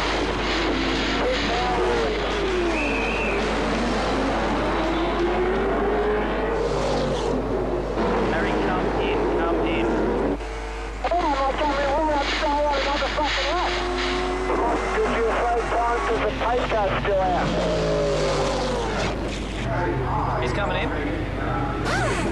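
V8 Supercar race engines revving and passing, their pitch rising and falling again and again, with a driver's voice over the team radio partway through.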